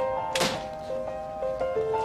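A single sharp thunk about half a second in, a door shutting, over background music playing a simple melody of held notes.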